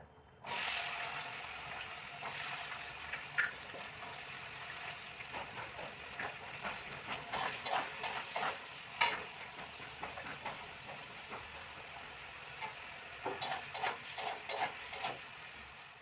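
Vegetables frying in oil in a steel kadai, a steady sizzle, with a metal spatula scraping and clicking against the pan in short runs around the middle and again near the end.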